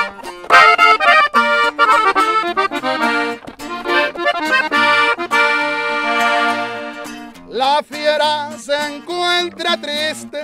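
Button accordion playing the melody of a norteño corrido intro, with acoustic guitar strumming the accompaniment.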